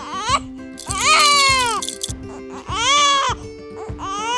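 A baby crying in two long wailing cries, each rising then falling in pitch, standing in for the crying toy doll, over light background music.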